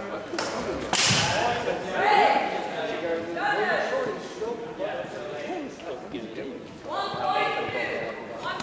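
One sharp crack of a longsword strike about a second in, followed by raised voices calling out.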